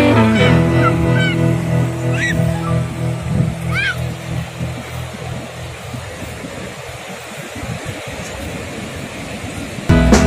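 Background guitar music fading out over the first few seconds, with a few short high chirping calls in the middle of the fade. After that, the steady rush of surf breaking on the beach.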